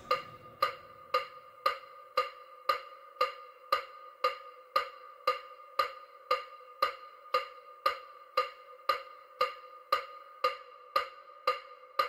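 Short synthetic ticks, evenly spaced at about two a second, each a brief pitched ping like a wood block: the steady bilateral-stimulation beat of an EMDR track.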